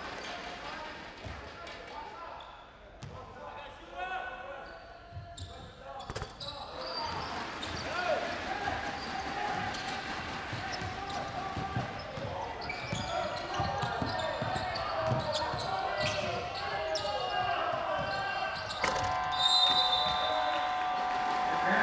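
Basketball arena sound: crowd shouting and cheering that swells from about a third of the way in, with the ball bouncing on the hardwood court. Near the end a steady electronic buzzer sounds as the game clock runs out.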